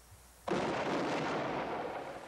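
A volley of gunfire goes off suddenly about half a second in, and its report and echo hang on for over a second before starting to fade.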